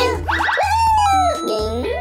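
Cartoon soundtrack: background music over a steady low bass, with high-pitched sliding sounds that rise and fall in pitch.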